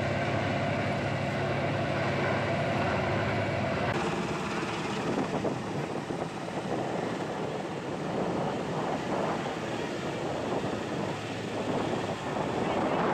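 Steady drone of a water-bombing helicopter's rotor and engine, which stops abruptly about four seconds in. A rougher, uneven outdoor noise follows.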